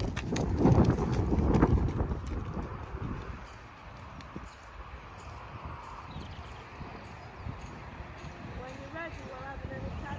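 Horse's hoofbeats on a loose-chip arena surface, loud and close at first as the horse passes by, then softer as it moves away across the arena.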